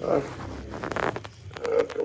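A strap being fastened around an ankle: a quick run of small clicks and rustling, with brief murmurs of voice.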